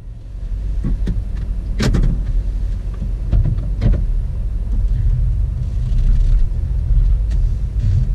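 Car engine running with a steady low rumble heard inside the cabin, with several sharp clicks and knocks; the loudest, about two seconds in, is a car door being shut.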